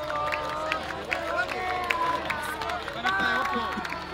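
Stadium crowd in the stands: many voices talking and calling out at once close around, with scattered sharp clicks.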